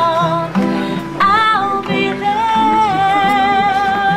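A woman singing while strumming an acoustic guitar, holding one long note through the second half.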